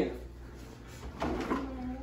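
Wooden kitchen drawer being opened and rummaged in, with a faint knock a little over a second in.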